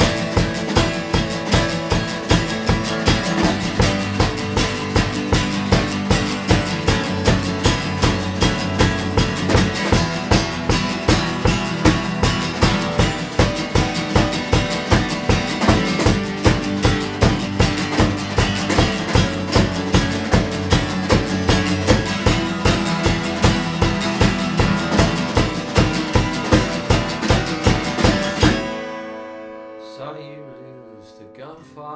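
Two acoustic guitars strumming together over a small drum kit (snare and bass drum) keeping a steady beat, an instrumental passage with no singing. About two seconds before the end the full band stops sharply, leaving one guitar ringing quietly.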